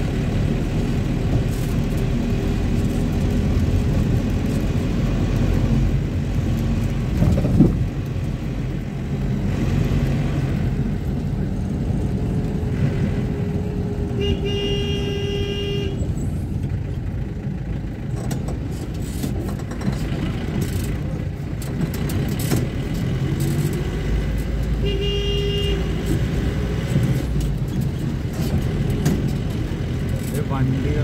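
Engine and road rumble of a vehicle driving through city traffic, with a single sharp knock about a quarter of the way in. A vehicle horn honks twice: a long honk around halfway and a shorter one a few seconds before the end.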